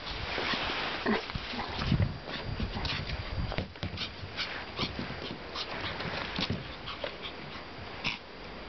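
A Pomeranian puppy whimpering and yipping as she moves about, among many short scuffs and taps.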